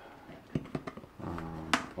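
Hands handling a cardboard box, with a few light clicks, then a low, steady hummed or grunted vocal sound from about halfway in, broken by a sharp click near the end.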